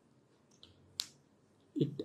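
A single sharp click about a second in, with a fainter tick just before it, in an otherwise quiet pause.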